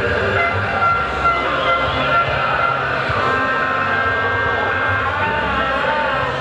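Crowd noise from a large protest, with several long held tones at different pitches sounding over it.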